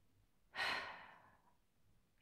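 A woman's single audible breath, a sigh, about half a second in, starting suddenly and fading away over most of a second.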